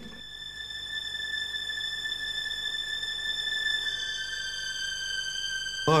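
Magic sound effect: a steady, high-pitched electronic tone that drops slightly in pitch about four seconds in. It goes with a magical burst of flame and smoke from a vase as a genie is conjured.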